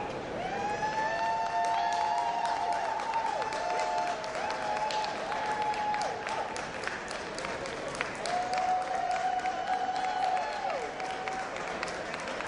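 Audience applauding steadily, with several long, high-pitched cheering calls rising and falling over the clapping.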